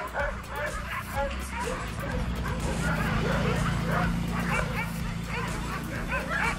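Many excited sled huskies barking, yipping and whining as a harnessed team sets off at a run. A low steady hum sits underneath from about two seconds in.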